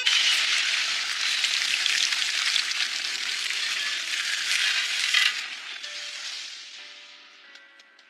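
Cartoon sound effect of a rock wall opening to reveal a hidden passage: a loud, steady rush of crackling noise that starts suddenly, holds for about five seconds, then fades out.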